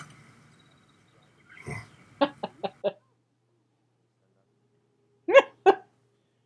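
Short wordless vocal sounds: a quick run of four soft hiccup-like blips, then a pause, then two louder short syllables near the end.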